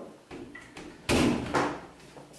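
A door being shut, with one sudden bang about a second in.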